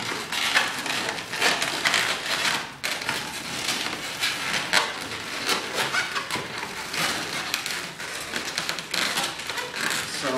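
Latex twisting balloons rubbing and scrunching against each other in the hands as bubbles are twisted and locked together: a busy, uneven run of short rubbing strokes.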